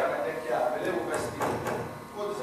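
Actors' voices speaking stage dialogue, with a few short sharp clicks or knocks about halfway through.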